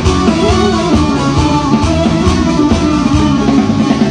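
Live band music: electronic keyboards playing a quick melody over drums.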